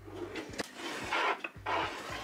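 Kitchen drawers sliding open on their runners, with a few light knocks and rubbing noises.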